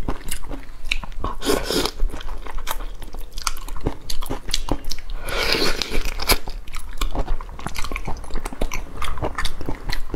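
Close-miked eating of large braised shrimp in sauce: shells cracking and crunching, biting and wet chewing. Many sharp clicks run throughout, with a longer, louder crunching stretch just past the middle.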